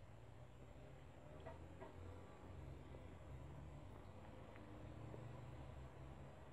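Near silence: a low steady room hum, with a few faint clicks about one and a half to two seconds in.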